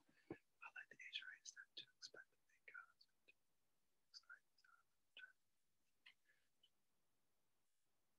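Near silence, with faint, barely audible whispered speech in the first few seconds.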